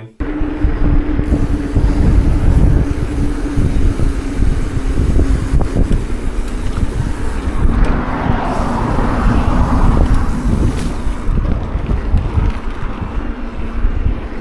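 Wind rumbling on the microphone of a bicycle-mounted camera while riding along, with a steady low hum underneath and a rougher hiss for a couple of seconds in the middle.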